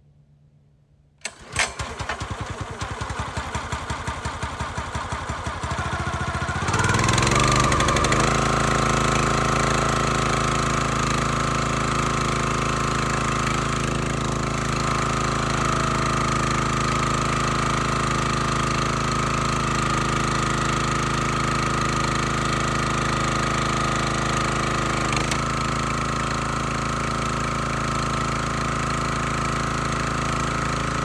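Gas engine of a Black Diamond log splitter starting: it fires about a second in and runs slowly with an even beat, then speeds up about seven seconds in and runs steadily at a higher speed.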